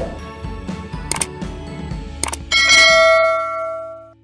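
Subscribe-button animation sound effects: two sharp clicks, then a bright bell ding that rings on and fades away.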